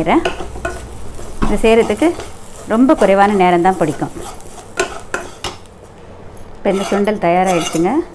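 A flat spatula stirring and scraping sprouted green gram sundal around a nonstick pan, with a light sizzle. A voice comes through in three short stretches over it.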